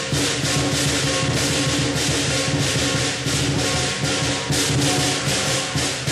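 Lion dance percussion band playing: a large Chinese drum beating under fast, continuous clashing of hand cymbals, several crashes a second.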